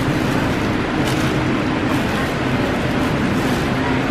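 Steady background din of a busy warehouse store: a constant low hum under an even wash of noise, with one brief click about a second in.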